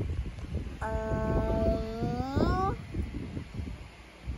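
A young child's wordless drawn-out vocal sound, held on one pitch for about two seconds and then gliding upward at the end, over soft thumps and rustling.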